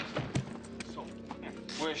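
Drama soundtrack: a quick run of sharp knocks and scuffs over background music, then a man starts speaking near the end.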